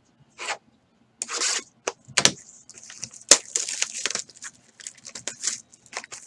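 Cardboard card boxes being handled on a table with a few knocks and clicks, then from about three seconds in the crinkling and tearing of plastic shrink wrap being pulled off a sealed box of baseball cards.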